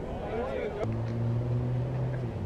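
A voice calls out briefly. Then, just under a second in, a low steady engine hum sets in and holds.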